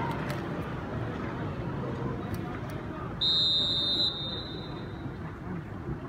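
Referee's whistle, one shrill blast just under a second long about three seconds in, signalling the start of a minute's silence. Underneath, a stadium crowd murmurs quietly.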